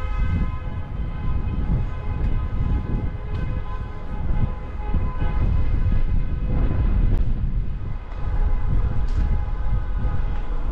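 Steady machine hum made of several even tones, over a low, uneven rumble.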